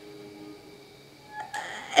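A quiet pause in a woman's talk: low room tone in a small room, with a brief faint mouth or breath sound about one and a half seconds in, just before she speaks again.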